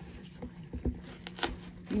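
A few light clicks and knocks with some rustling as a cup and saucer are handled in a gift box lined with tissue paper; the sharpest knock comes about one and a half seconds in.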